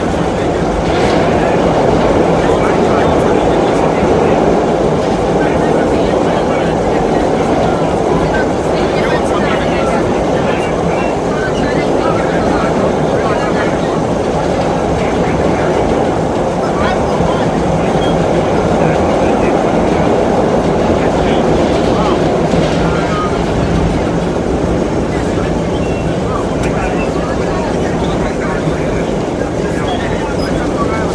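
Vintage BMT Standard subway car running at express speed through the tunnel, heard from inside the car: a loud, steady rumble of wheels on rail and running gear.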